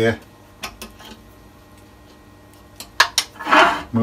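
A couple of faint metal clicks, then about three seconds in two sharp metal clacks and a short scrape as the Coronet Regent lathe's metal outrigger arm is swung round by hand.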